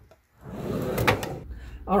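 Handling noise on a tabletop: an object slid and set down, with a knock about a second in.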